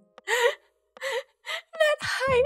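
A woman laughing in about four short, breathy bursts, with gasps between them.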